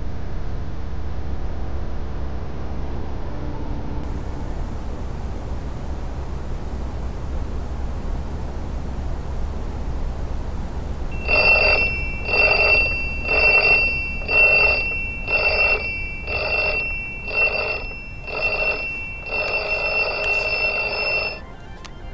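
Smartphone alarm ringing, starting about halfway in: beeps about once a second, nine times, then a longer unbroken ring of about two seconds that cuts off suddenly as it is switched off. A low steady hum lies under the first half, before the alarm starts.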